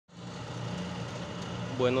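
A steady low motor hum with background noise, and a man starting to speak near the end.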